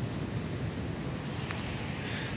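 Steady rushing noise of wind on the microphone, with a faint click about one and a half seconds in.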